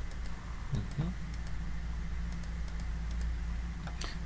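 A series of light computer clicks as the moves of a Go game record are stepped forward in a review program, over a steady low electrical hum.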